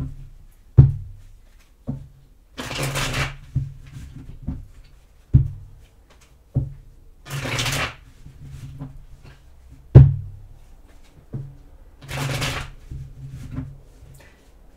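A deck of tarot cards being shuffled by hand: three short riffling bursts about five seconds apart, with sharp knocks of the deck against the table in between, the loudest about a second in and again near ten seconds.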